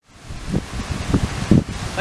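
Wind noise on the microphone: a steady rush that fades in, with a few low thumps from gusts.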